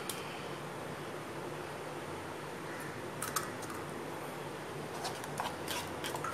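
Eggs being cracked open over a bowl of spice marinade: a few faint light clicks of eggshell over a steady low room hiss.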